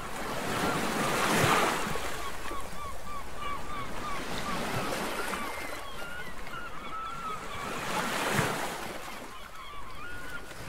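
Waves washing and wind over open water, swelling twice, about a second and a half in and again near the end. Birds give short calls over and over throughout, like distant geese honking.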